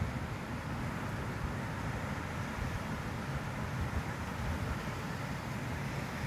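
Steady breeze rumbling on the microphone, mixed with the even wash of sea surf.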